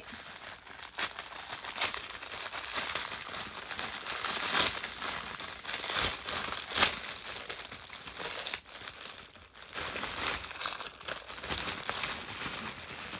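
Thin paper wrapping rustling and crinkling as it is handled and pulled apart, with sharper crackles now and then, the loudest about seven seconds in.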